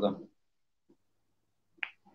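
A man's voice over a video call trailing off, then dead silence, with one short sharp click near the end just before speech resumes.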